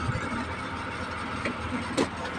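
Small plastic toy pieces being handled and set down, with a couple of light clicks near the end, over a steady low background hum.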